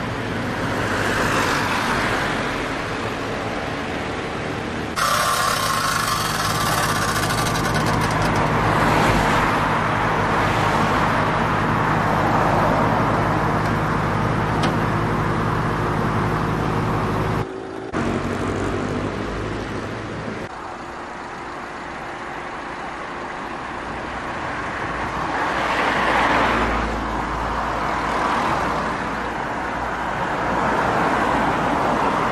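Road traffic: cars passing, the sound swelling and fading as each goes by. From about five seconds in, a steady low engine hum joins until an abrupt cut at about seventeen seconds.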